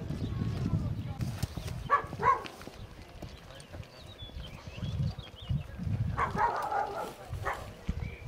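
Footsteps of several people walking on a dirt path, uneven low thumps, with indistinct voices of a group in the background.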